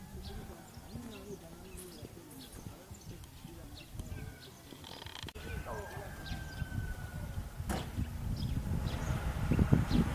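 Outdoor village ambience: faint distant voices and scattered bird chirps, with a low wind rumble on the microphone that grows near the end.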